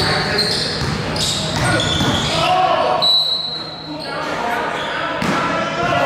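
Basketball bouncing on a hardwood gym floor among players' voices, ringing in a large gym, with a short high squeak about three seconds in.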